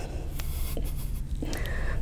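Quiet room tone: a low steady hum with a few faint rustles and clicks.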